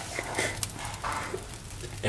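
A man crying quietly, with uneven breaths and sobs, and faint voices in the room.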